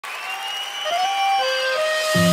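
Opening of a live sertanejo song: a thin melody of a few held notes without bass or drums, over crowd applause.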